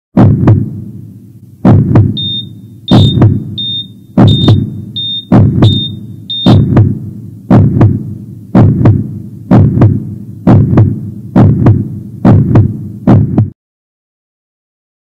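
Heartbeat sound effect: slow, heavy double thumps about every second and a quarter, joined in the first half by a high beep repeating about seven times. It stops abruptly near the end.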